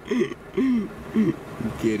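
Speech and short bursts of laughter from people talking.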